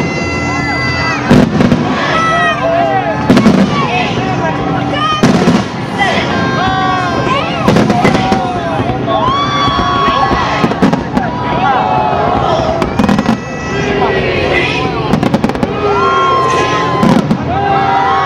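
Fireworks bursting about every two seconds, each a sharp bang, over a crowd shouting and cheering.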